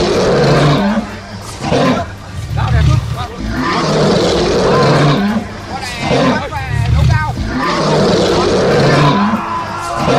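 Loud shouting and yelling voices in short bursts. Under them a deep low sound swells about every two seconds.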